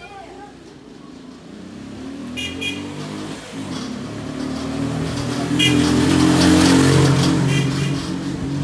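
Small motorbike engine running and drawing closer, growing steadily louder to a peak about six to seven seconds in, then easing off slightly. A few short high chirps cut in over it three times.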